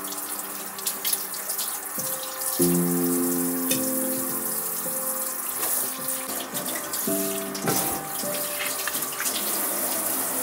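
Background music over a steady hiss of cooking from a clay donabe on a lit gas burner, with a few soft knocks as crab legs are laid into the pot.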